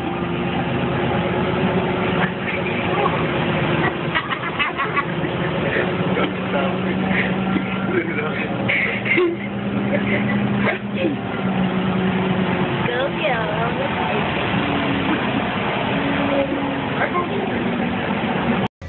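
The steady low drone of a moving passenger transit vehicle heard from inside the cabin, its motor hum shifting in pitch now and then, with scattered indistinct voices.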